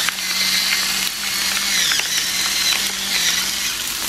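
Pepper mill grinding black pepper over a pan of frying gnocchi and cherry tomatoes, a steady grinding that stops shortly before the end, with the oil sizzling underneath.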